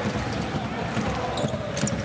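Basketballs bouncing on a hardwood court: a series of short, irregular thuds.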